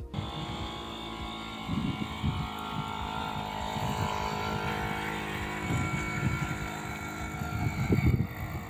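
Small moped engine running steadily under load as it drags a wooden plough through a field, with a couple of brief low surges.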